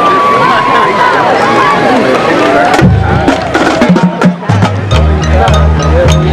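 Crowd voices in the stands, then about three seconds in a marching band starts playing: sharp percussion clicks and low brass chords, settling into steady sustained chords with a regular beat near the end.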